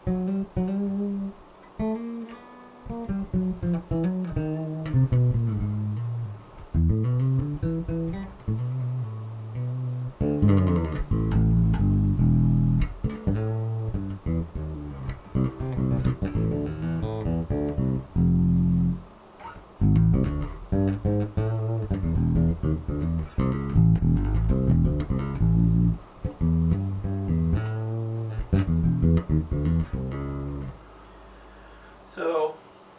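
Zon VB4 headless four-string electric bass played fingerstyle: a bass line of plucked notes. It is sparser for the first ten seconds, then denser and louder.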